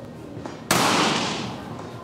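A single rifle shot, sharp and loud, with an echo that dies away over about a second.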